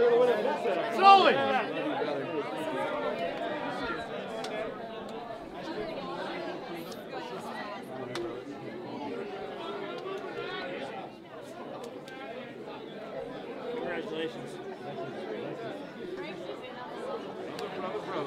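Crowd chatter: many people talking at once in a packed room, no single voice clear, with one voice rising loud about a second in.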